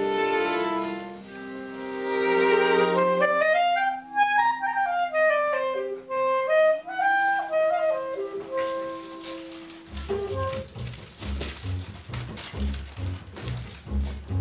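Live chamber ensemble music: held string chords, then a clarinet plays a quick run up and back down over a sustained low note. About ten seconds in, a rhythmic low bass pulse with a clicking beat starts.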